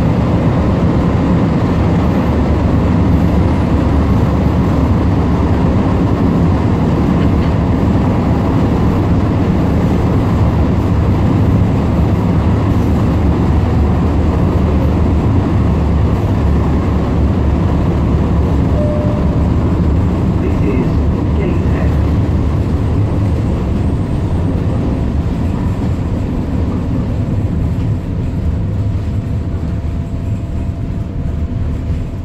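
Class 994 Tyne and Wear Metrocar heard from inside the saloon while running: a steady loud rumble of wheels and running gear with faint whining tones, easing off a little near the end as the train slows for a station.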